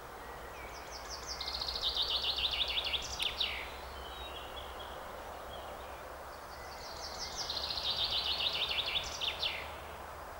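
A songbird singing two phrases about six seconds apart, each a fast run of repeated high notes lasting about two and a half seconds and ending in a quick flourish, over a steady low outdoor hiss.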